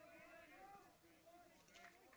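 Near silence, with faint distant voices in the background.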